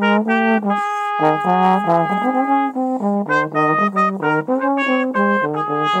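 Slide trombone playing a practice exercise: a quick run of short, separately tongued notes stepping up and down, with longer held notes between about one and three seconds in.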